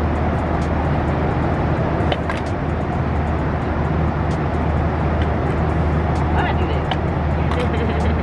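Steady airliner cabin drone from the jet engines and airflow in flight, with a deep low hum, and a few light clicks.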